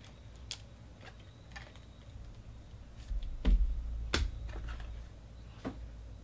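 Light, irregular clicks and taps of hands handling trading cards and hard plastic card holders, with two louder knocks about three and a half and four seconds in.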